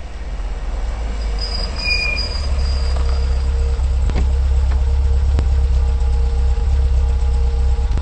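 Low vehicle engine rumble that grows steadily louder, with two sharp clicks in the middle.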